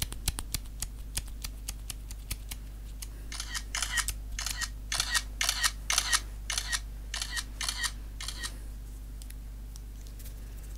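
Close-miked ASMR trigger sounds: a quick run of small clicks, then from about three seconds in a series of short scratchy strokes, about two a second, that stop near the end. A steady low electrical hum runs underneath.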